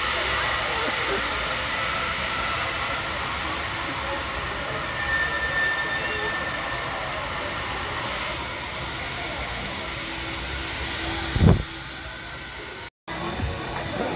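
Steady noise of an amusement-park crowd and ride around a drop tower. About eleven and a half seconds in there is a sudden loud low thump, and the sound then cuts out briefly.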